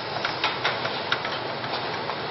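Steady room hiss with irregular small clicks and rustles, a few each second.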